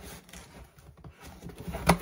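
Cardboard shipping box being gripped and pulled at, with soft rubbing and scraping of the cardboard, then one sharp knock near the end; the tape still holds the flaps shut.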